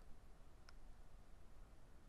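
Near silence: faint room tone with a low steady hum and a single faint click about two-thirds of a second in.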